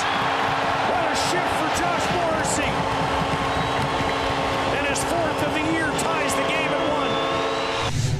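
Ice hockey arena sound: crowd noise with a few sharp clacks of sticks and puck on the ice, over a held chord of steady tones.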